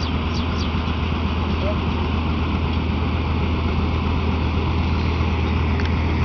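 1958 John Deere 620's two-cylinder engine running steadily under load while pulling a side-delivery hay rake, a low, even drone that holds at one level throughout.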